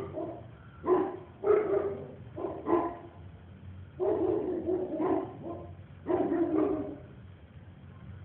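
A dog barking repeatedly, some single short barks and some longer runs of barks.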